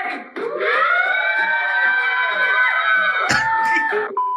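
A group of people yelling and cheering in long, drawn-out shouts, answering a call to make some noise. Near the end this cuts off into a short burst of static and steady electronic tones from a video glitch transition.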